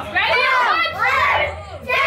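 Children's voices shouting and calling out excitedly over one another in short bursts, with a brief lull just before the end.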